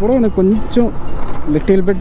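A person talking over the steady low running noise of a motorcycle and surrounding traffic, picked up by a helmet-mounted action camera's microphone.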